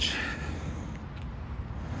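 Road traffic on a multi-lane main road, a steady low rumble.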